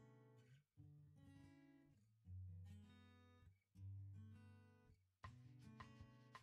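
Quiet background music: an acoustic guitar strumming chords, a new chord about every second and a half.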